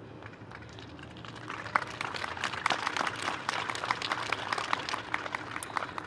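Audience applause, a dense patter of many hands clapping, beginning about a second and a half in and tapering off near the end.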